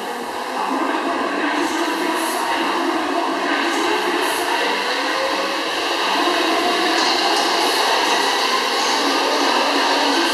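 Air-resistance rowing machine's fan flywheel whirring steadily under continuous rowing.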